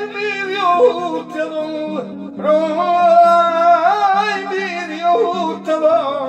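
A man sings long, wavering, sliding notes with no clear words over his own strummed Spanish acoustic guitar. This is a praise song in a flamenco-like style. The voice breaks off briefly about two seconds in.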